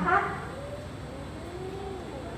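A woman's amplified voice ends a sentence with a short word, then only faint, indistinct voices and the hum of a large hall remain.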